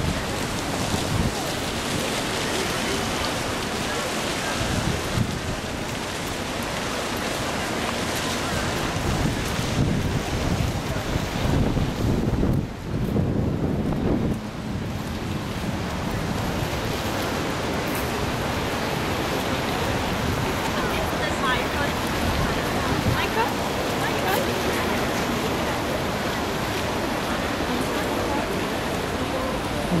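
Wind buffeting a camera microphone in uneven gusts, heavy low rumbles over a steady outdoor hiss.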